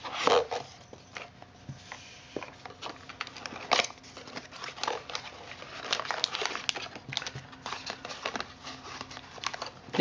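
Small cardboard box being lifted out, opened and handled, with rustling and crinkling of packaging and many small clicks and scrapes of cardboard flaps.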